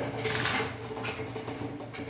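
A mobile whiteboard on a wheeled stand being rolled across the floor: steady rumble of the casters with some rattle and scraping from the frame.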